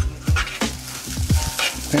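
Rice frying in a pot on the stovetop, sizzling, with a spoon stirring it, under background music with a deep bass beat.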